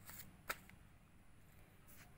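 Faint paper handling: an old paper booklet rustles briefly, gives a single sharp tap about half a second in, and rustles lightly again near the end.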